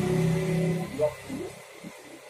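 A man speaking: a drawn-out vowel held for most of a second, a short syllable, then a brief pause.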